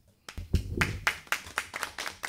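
A small group of people applauding, the clapping starting about a quarter of a second in and going on as a dense run of irregular claps.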